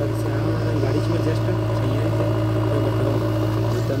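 JCB backhoe loader's diesel engine running steadily while the backhoe arm loads soil, with faint voices in the background.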